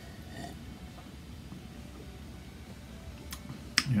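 A quiet sip of beer from a glass about half a second in, over low room tone. Two sharp mouth clicks in the last second, just before speech starts.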